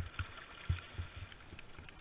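Paddle strokes splashing in lake water from a small paddled boat, with several dull low knocks over a steady light hiss of water.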